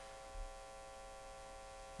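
A pause in speech filled by a faint steady electrical hum with a few thin high tones, from the sound system. A soft low bump comes about half a second in.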